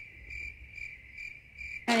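Cricket chirping sound effect: a steady run of high, even chirps, about two or three a second, cutting off abruptly near the end. It is the comedic 'crickets' cue for an awkward silence.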